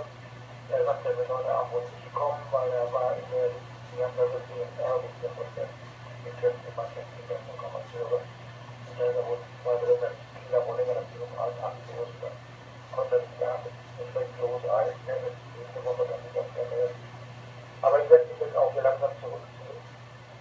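A person talking over an amateur FM repeater, heard through a transceiver's speaker: thin, narrow-band radio voice with a steady low hum underneath.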